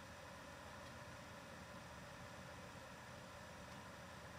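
Near silence: faint, steady background hiss of room tone.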